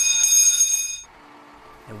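Fire station alarm bell ringing loudly with a steady, high, ringing tone, cutting off suddenly about a second in: the alert that calls the crew out to a run.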